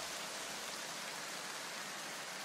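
A steady, even hiss that does not change.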